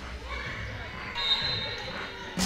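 Live sound of a volleyball match in a gym: voices echoing in the hall and a volleyball bouncing on the hardwood court floor.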